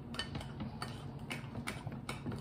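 Homemade glue slime being stirred with a plastic spatula in a glass bowl and kneaded by hand, giving a run of small irregular clicks and taps, several a second.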